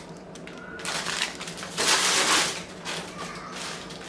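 Plastic food packaging crinkling and rustling as it is handled and set down, with a louder burst of rustling about two seconds in.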